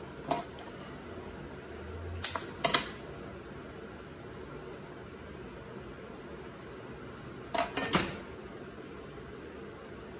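Kitchen handling noises, plates and utensils moved on a counter: a few sharp clicks and knocks, one just after the start, a pair between two and three seconds in and another pair near eight seconds, over a steady low hiss.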